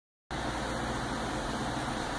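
Steady low hum and hiss of a portable air conditioner running in the room. It cuts in abruptly a fraction of a second in and then holds even, with no other sounds on top.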